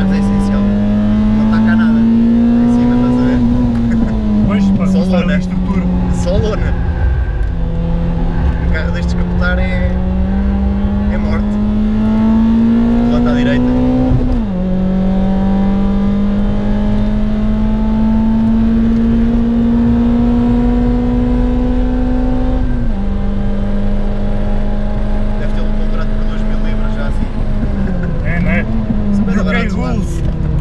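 Cup race car's engine heard from inside the cabin, pulling hard on track: its pitch climbs slowly through each gear and drops sharply at the gear changes, twice near the middle and again in the last third.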